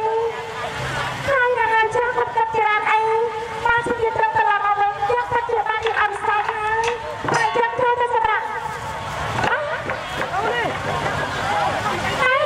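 A woman singing long, held notes with a slight waver into a microphone, in Khmer Bassac opera style. About three-quarters of the way through, the long notes give way to shorter, wavering phrases.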